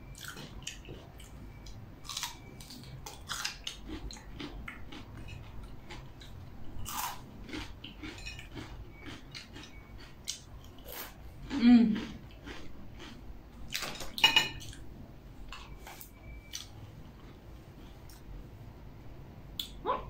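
Scattered small clicks and taps of a knife and fingers against a plate while cream cheese is spread into jalapeño halves, with mouth sounds of chewing. A short voice sound just before the middle is the loudest thing.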